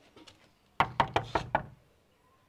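A hand knocking on a wooden door: five quick raps in under a second.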